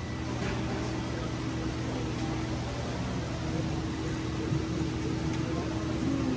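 Steady hum of saltwater aquarium pumps and filtration equipment, a constant low drone with a higher tone over a faint hiss; the higher tone drops out briefly around the middle.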